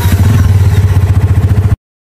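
Motorcycle engine running loudly with a rapid, even pulse, cut off suddenly near the end.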